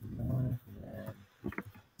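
A man's low voice drawn out in two long, held sounds, mumbling the words as he types them, followed by a few keyboard clicks near the end.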